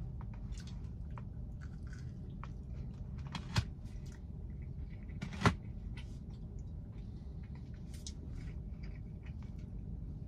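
A person chewing a mouthful of soft peanut butter cookie, with small wet mouth clicks and two sharper clicks about three and a half and five and a half seconds in, over a steady low hum.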